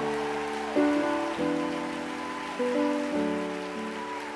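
Grand piano playing slow, held chords as soft background accompaniment, the chord changing roughly once a second.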